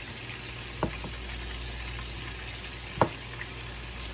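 Blue catfish frying in hot oil: a steady sizzle over a low hum. Two sharp knocks cut through it, about one second in and three seconds in.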